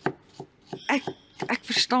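Chef's knife chopping on a plastic cutting board: a run of quick sharp taps, about three or four a second, as the blade strikes the board.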